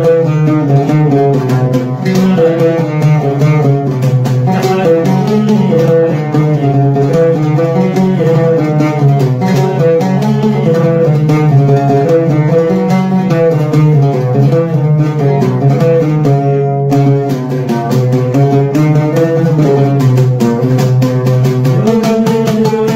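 Oud plucked with a plectrum in a continuous run of notes, with a man's voice singing a melody over it.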